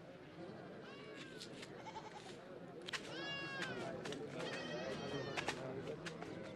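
Goats bleating faintly, three calls with the loudest about three seconds in, over a quiet outdoor background with a few soft clicks.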